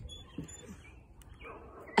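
A young child's brief, faint laugh about half a second in, then a quiet stretch of background with a faint short high chirp near the end.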